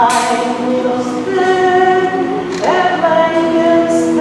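A woman singing unaccompanied, holding long notes with a slide up into a new note partway through, over the background noise of a busy hall.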